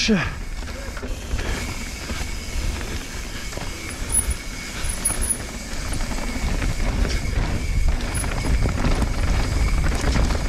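Downhill mountain bike rolling fast over a dirt forest trail, heard through an action camera's microphone: a steady rumble of wind and tyre noise, growing louder as speed builds.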